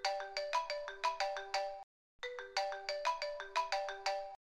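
Mobile phone ringtone signalling an incoming call: a quick electronic melody of short notes, played through twice with a brief break just before halfway.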